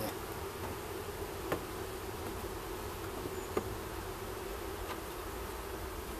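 Honey bees buzzing steadily from an open hive, with a couple of light clicks about a second and a half in and again a couple of seconds later.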